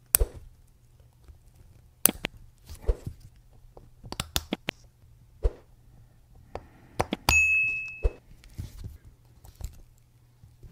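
Small steel watchmaker's tools clicking and tapping against a Rolex 3035 movement and its steel case as the winding stem is worked free and drawn out. About seven seconds in, a metal tool gives a single clear ring that dies away within a second.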